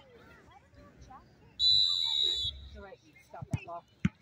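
Referee's whistle blown once in a single steady high blast of about a second, the signal for a penalty kick to be taken in a shootout. A short sharp thump follows near the end.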